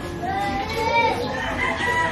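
A rooster crowing: one long crow that rises and then falls away, filling most of the two seconds.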